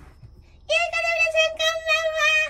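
A high-pitched voice singing a held high note with a slight wobble, starting about two-thirds of a second in and broken into a few short pieces.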